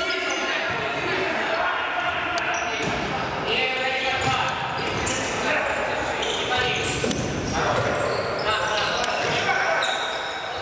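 Indoor futsal game in a reverberant sports hall: players calling out to each other over the scattered thuds of the ball being kicked and feet on the wooden floor.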